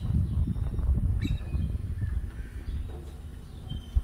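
Wind buffeting the microphone, a gusting low rumble, with a few faint, short animal calls in the distance.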